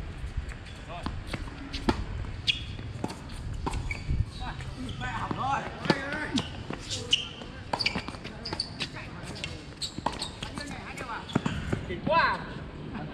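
Tennis balls being struck by rackets and bouncing on a hard court: sharp pops at irregular intervals, with people talking in the background.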